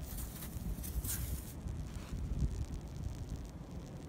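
Wind on the microphone outdoors: a low, uneven rumble, with a couple of brief faint hisses in the first second or so.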